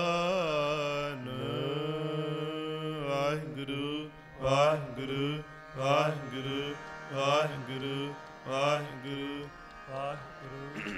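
Gurbani shabad kirtan: men singing with harmonium accompaniment. The first few seconds are a long held, wavering line; after that come short phrases that rise in pitch, about one every second and a half.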